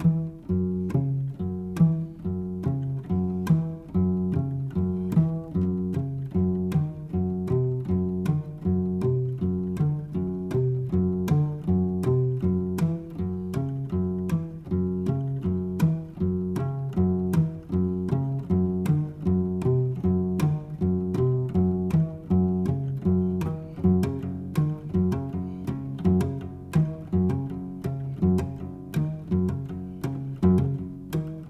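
Chamber music for harpsichords, viola da gamba and percussion: low plucked and bowed string notes in a steady, repeating pattern with sharp, evenly spaced attacks.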